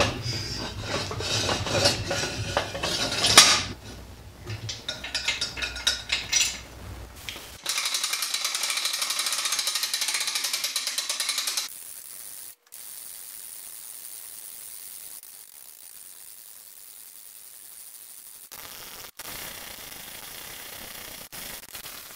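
Metal knocks and rattles from a pickup bed crane being worked. Then, about eight seconds in, about four seconds of rapid, even clicking from its hand winch's ratchet pawl as the crank is turned, followed by a much quieter steady hiss.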